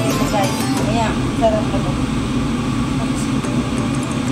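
A kitchen appliance running with a steady low rumble, with faint voices in the first second or so.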